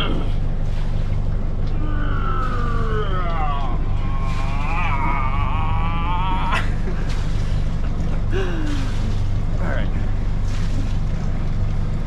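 Boat engine idling with a steady low hum. Over it a small child vocalizes in high, gliding tones in the first half, and there is a single sharp click a little past halfway.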